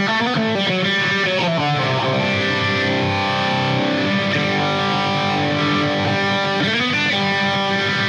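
Electric guitar played through a Boss ME-70 multi-effects processor on its distorted Stack amp model with the Uni-Vibe modulation effect on: sustained chords and notes with pitch bends about a second in and again near the end.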